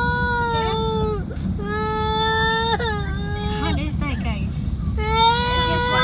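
A young child crying in long, drawn-out wails, each held on one pitch and dropping at the end, three times, over the low rumble of a moving car.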